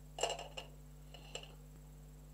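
Two light clinks about a second apart, as painting things are set down against a hard surface, over a faint steady low hum.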